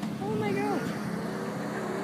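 A sports car's engine running steadily as it drives around at a distance, with people's voices close by over it.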